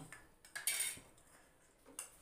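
Metal spoon clinking and scraping against steel dishes: a clink at the start, a longer scrape about half a second in, and a short click near the end.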